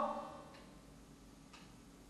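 A pause that is near silent except for two faint short ticks about a second apart.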